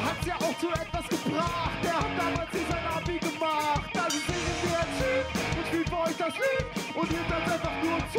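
Live rock band playing indie rock-rap: a vocalist over electric guitars, bass guitar and a drum kit keeping a steady beat.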